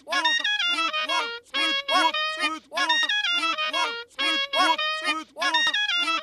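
Cartoon clarinet playing short pitched notes, chopped and looped into a rhythmic remix pattern that repeats about every second and a half.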